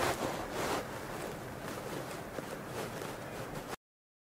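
Quiet room tone with a few faint rustles. It cuts off abruptly to dead silence near the end.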